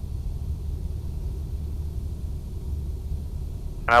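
Steady low rumble inside the cabin of a Cessna 172SP in flight: its four-cylinder Lycoming engine is throttled back for a simulated engine failure, with airflow noise over the airframe.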